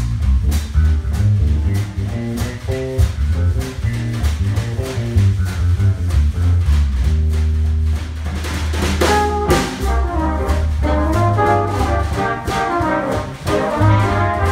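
A jazz combo playing: electric bass and drum kit keep a steady groove, and a trumpet comes in with a melody a little past halfway.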